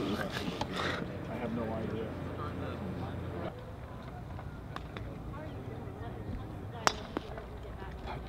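Golf club striking a ball on a short wedge shot: a single sharp click near the end, over a background of spectator chatter.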